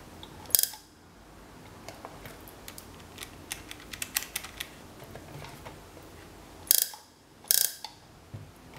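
Spark gap of a homemade EMP generator, a taser's high-voltage supply driving a copper coil, firing in three short bursts of sparking: one about half a second in and two close together near the end. In between, a run of light plastic clicks from calculator keys being pressed.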